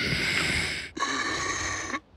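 A cartoon lion's failed attempt to roar: two hoarse, breathy rasps of about a second each, with hardly any voice in them, the sign that the lion has lost its roar.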